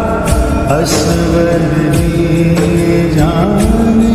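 Hindu devotional hymn to Hanuman: a chanted, sung melody over sustained instrumental accompaniment, with occasional percussion strokes.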